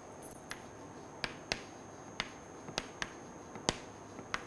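Chalk tapping and clicking on a chalkboard while writing letters and commas: a series of sharp, irregularly spaced taps.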